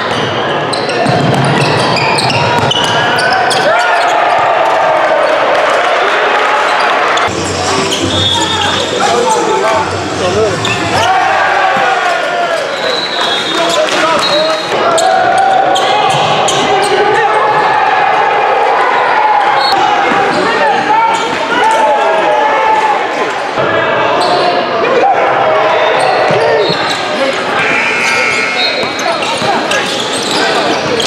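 Live game sound in a basketball gym: a ball dribbling and bouncing on the hardwood, short high shoe squeaks, and indistinct shouting from players and spectators, echoing in the large hall.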